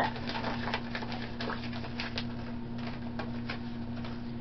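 Thin plastic wrapping crinkling and crackling in the hands as a blind-box packet is opened, in many quick irregular crackles, over a steady low hum.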